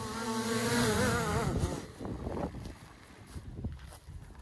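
Small quadcopter drone's propellers buzzing, a steady pitched whine that wavers slightly, then dies away about two seconds in as the drone is caught by hand.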